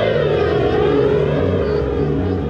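Psychedelic rock band playing live: a sustained, siren-like lead tone that slides down in pitch and then wavers, over a bass line stepping between low notes.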